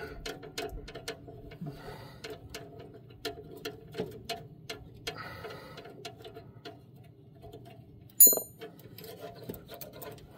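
A hand ratchet clicking in short runs while bolts are worked loose on a truck's starter. A single sharp metallic clink rings out about eight seconds in.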